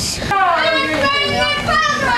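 Children's voices calling out, high-pitched and drawn out, with no other sound standing out.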